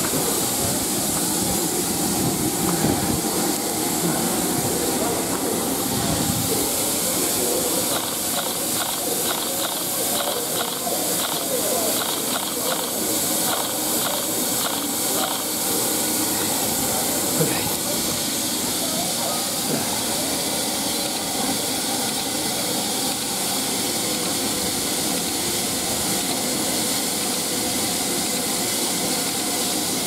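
A steady hiss of steam from the standing LNER B1 steam locomotive no. 61306 Mayflower, with indistinct voices in the background.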